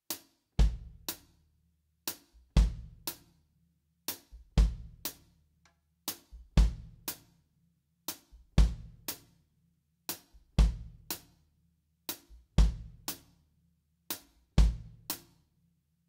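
Drum kit playing a basic reggae one drop groove: a hi-hat hit on beats two and four and the bass drum alone on beat three, with beat one left empty. The three-hit cycle, hits half a second apart, repeats evenly about every two seconds, eight bars in all.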